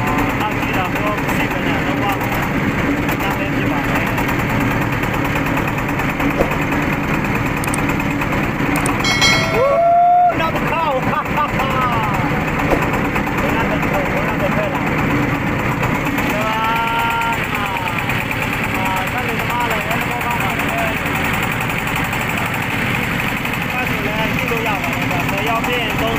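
A boat's engine running steadily under way, loud and unbroken, with people's voices over it now and then.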